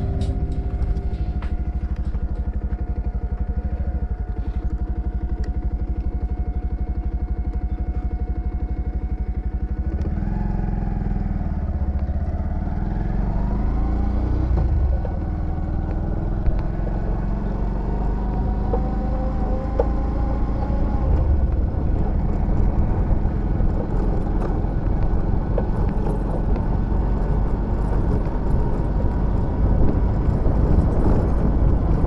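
Bajaj Pulsar 125's single-cylinder engine running as the motorcycle is ridden, holding a steady note at first. From about ten seconds in its pitch climbs as the bike speeds up.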